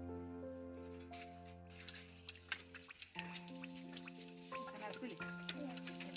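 Background music with long held notes. From about two seconds in, an egg frying in hot oil in a pan over a wood fire gives a run of sharp, irregular pops and crackles.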